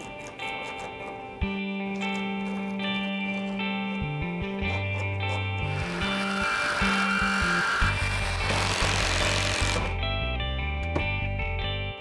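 Instrumental background music plays throughout. About six seconds in, an electric jigsaw cuts a wooden trim board for about four seconds, a harsh buzzing rasp under the music that stops suddenly.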